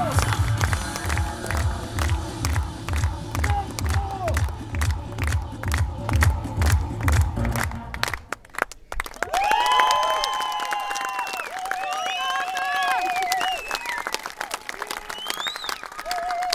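Music with a heavy, steady beat plays, then stops abruptly about halfway through. A crowd of children cheers and shouts in high voices.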